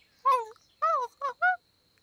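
A cartoon spider's wordless vocal reply, meaning yes: four short, high calls, each sliding down in pitch.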